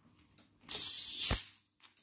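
Gas hissing out of a plastic bottle of Coke as its screw cap is twisted open: a sharp fizz lasting under a second, ending in a short dull thud.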